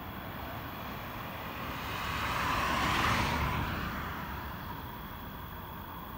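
A vehicle passing by: its noise rises, is loudest about three seconds in, then fades, over a steady background noise.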